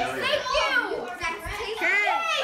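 Young girls' voices talking and calling out excitedly.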